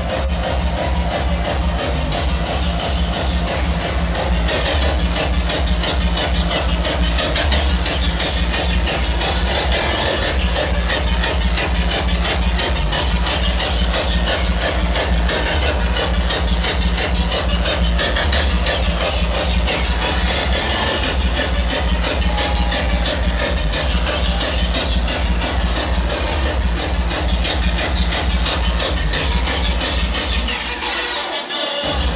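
Loud hardstyle dance music played live on DJ decks through a club sound system, driven by a heavy, evenly repeating kick-drum beat that comes in suddenly right at the start.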